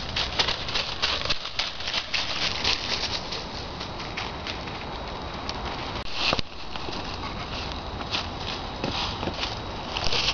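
Footsteps crunching through dry fallen leaves, an uneven run of crackling steps with one louder crunch about six seconds in.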